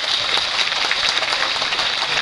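A theatre audience applauding, with many hands clapping densely, as a stage number ends and the lights go down.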